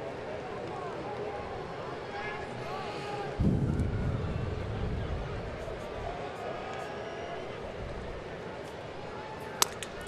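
Baseball stadium crowd murmur with scattered voices, growing louder and deeper about three and a half seconds in. Near the end comes a single sharp crack of a bat meeting a pitched ball.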